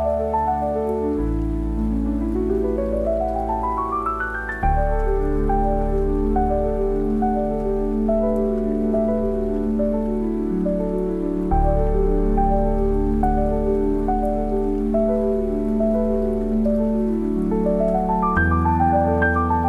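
Slow, gentle solo piano music: soft chords over deep held bass notes, with a rising run of notes about two to four seconds in. A soft rain sound plays underneath.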